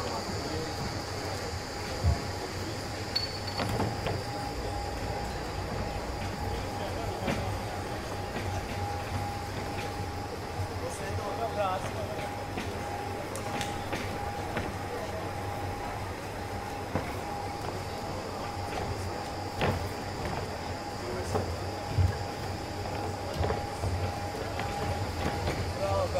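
Ambience of a cage-fighting bout in a near-empty arena: a steady hum with a high-pitched whine over it, a few short sharp thuds, and faint scattered shouted voices.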